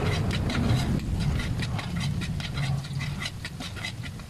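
Metal spatula scraping and knocking against a steel wok at about three to four strokes a second, stirring garlic and onion frying in hot oil, over a steady low hum. The strokes grow quieter near the end.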